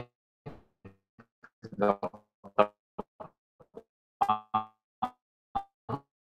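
A person's voice over a video-call connection, coming through in short broken fragments that cut in and out, with a few brief clicks in the gaps.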